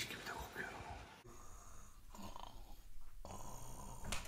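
A man snoring softly in his sleep.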